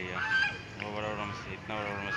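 Domestic goose honking, a call about a second in and another near the end.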